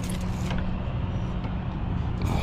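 A steady low rumble, like a vehicle engine running nearby.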